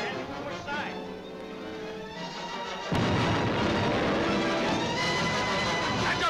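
Orchestral film score playing, then about three seconds in a sudden loud cannon blast whose rumble carries on under the music.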